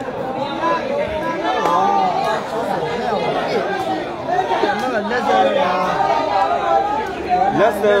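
A large crowd of spectators chattering, many voices talking and calling out at once.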